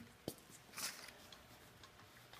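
Faint handling sounds of a cloth rag wiping WD-40 residue off an office chair's underside: a light click about a quarter second in, then a brief rubbing swish just under a second in.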